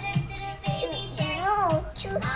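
A recorded children's song playing, with a child's singing voice over a steady beat.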